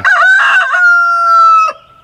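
A rooster crowing loudly once: a choppy opening, then a long held note that cuts off shortly before the end.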